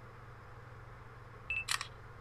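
Faint steady hum, then a brief high beep and a quick burst of sharp clicks about one and a half seconds in.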